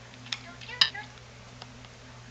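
A few sharp plastic clicks as a toddler presses the buttons of an Elmo toy phone, the loudest about a second in, with a short pitched sound right after it.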